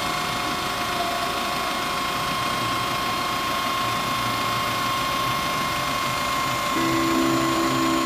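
Truck-mounted telescopic crane's hydraulic boom in motion: a steady mechanical whirring with a held tone throughout. A second, lower tone joins about a second before the end, and the sound cuts off suddenly.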